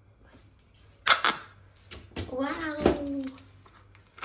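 Aluminium foil baking cups being handled and pulled apart, with two sharp metallic clicks about a second in and light crinkling; a woman says "Wow" in the middle.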